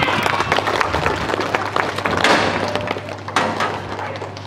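Clanks and knocks of a steel door's sliding bolt and padlock being worked by hand, then the metal door pushed open.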